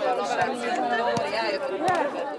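A small group of people chattering, several voices talking over each other at once.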